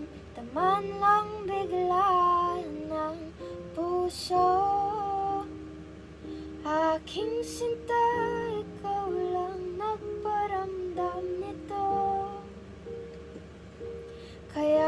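A woman singing a slow, gentle song over backing music, the melody gliding between held notes.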